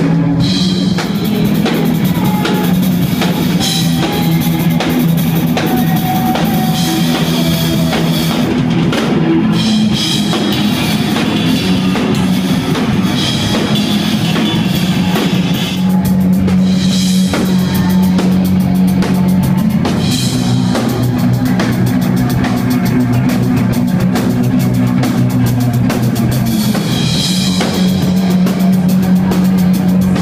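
A live rock band playing loud: electric guitar and drum kit, with held low guitar notes over steady drumming.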